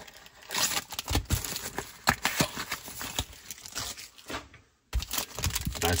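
Hands opening a small cardboard trading-card box and handling the foil card pack inside: irregular crinkling and rustling of cardboard and foil, with a short gap of silence near the end.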